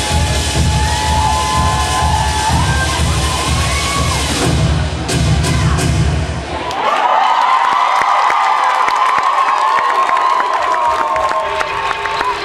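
Dance music with a heavy bass beat under audience cheering; the music cuts off suddenly about seven seconds in and the cheering and shouting carry on.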